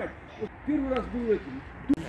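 A man's low voice making a few short hummed or murmured sounds, without clear words.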